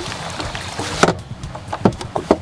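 A bass boat's livewell hatch being handled as a fish is put in, with a sharp knock about a second in as the carpeted lid is shut and a softer thump near the end.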